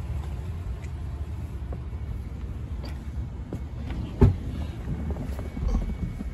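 Wind buffeting a handheld camera's microphone as an uneven low rumble, with faint handling clicks and one sharp thump about four seconds in.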